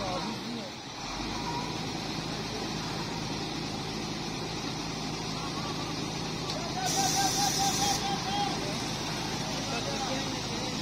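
A Yutong coach's engine runs at low speed as the bus pulls out and turns, a steady low hum. About seven seconds in there is a sharp hiss of air lasting about a second, with a short run of chirping beeps.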